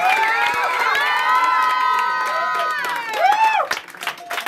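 Crowd cheering at the end of a band's set: several voices whooping together in long held yells, then a shorter yell near the end.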